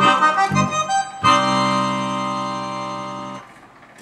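Roland digital V-Accordion playing the closing bars of a tune: a run of melody notes over bass chords, then a long held final chord that fades slightly and stops about three and a half seconds in.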